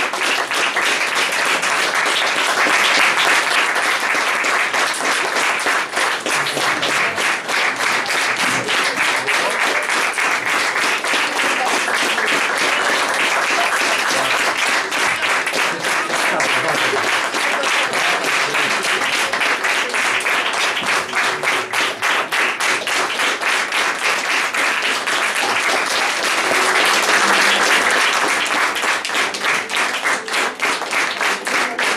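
Audience applauding steadily at a stage play's curtain call, many hands clapping at once.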